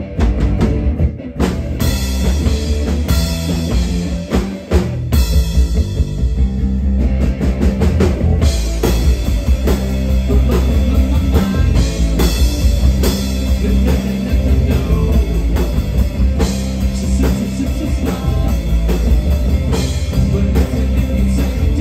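Live rock band playing: electric guitar, electric bass and drum kit.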